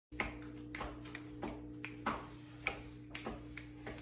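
A man's fingers snapping in a run of short, sharp snaps, roughly two to three a second at an uneven pace, over a faint steady hum.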